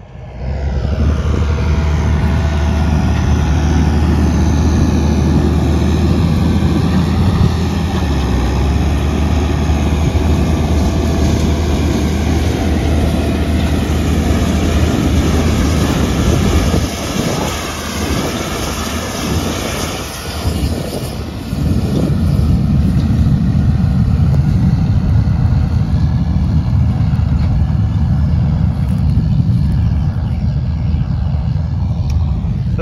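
Tractor engine running steadily under load while pulling a cultivator, heard at first from inside the cab. About sixteen seconds in the sound changes and dips for a few seconds, then a loud steady rumble returns.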